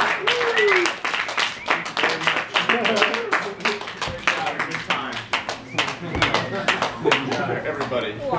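Hands clapping in quick, irregular sharp claps, mixed with voices and short gliding vocal calls.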